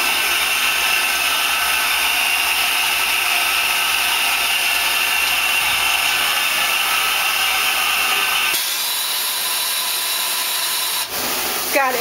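Nexturn SA-32 CNC Swiss-type lathe running a program cycle: a steady, loud hissing whir of the machine at work. Its low hum stops about eight and a half seconds in while the hiss carries on.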